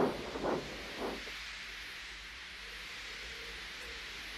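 A steam locomotive sound effect: a few soft puffs in the first second, then a steady faint hiss of steam from an engine standing at rest.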